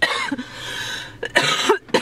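A person coughing: a burst right at the start and another about a second and a half in.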